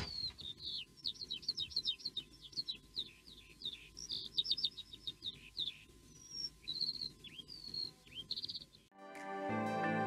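Birdsong: rapid runs of short high chirps and trills with a few brief whistles, after a sharp click at the start. Gentle music comes in about nine seconds in.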